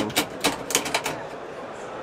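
A quick run of about seven sharp clicks in the first second, then quiet.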